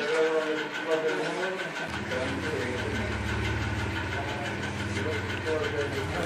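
A low, steady hum, like a running motor or engine, starts about two seconds in and sounds under murmuring voices.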